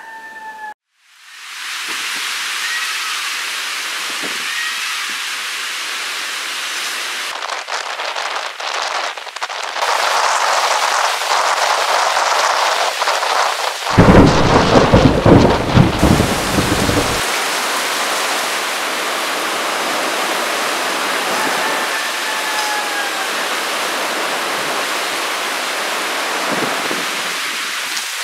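Heavy rain falling steadily. A loud rumble of thunder about fourteen seconds in lasts a few seconds.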